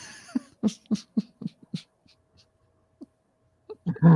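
A woman laughing: a run of about six short breathy laugh pulses in the first two seconds, which then die away.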